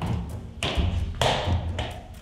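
A mini basketball bouncing on a hard floor: two sharp bounces about half a second apart, each with a short echo.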